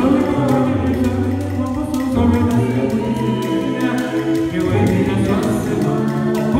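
Small a cappella gospel group of mixed voices singing in close harmony over a held low bass part, with a beaded gourd shaker keeping a steady light beat.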